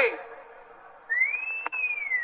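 A single high whistling tone starts about a second in, rising in pitch, then holding and sagging slightly over just over a second, with a short click partway through.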